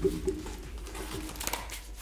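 A soft, low, closed-mouth hum from a person in the first half second, then faint rustling.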